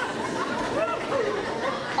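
Many overlapping voices chattering at once, with no single speaker standing out.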